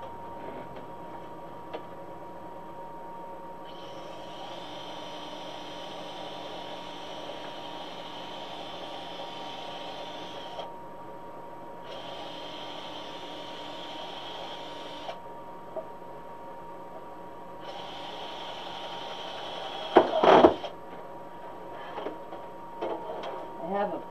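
Electric drill running in three bursts, a long one of about seven seconds and then two shorter ones of about three seconds, boring holes in a wreath sign. A loud knock comes just after the last burst.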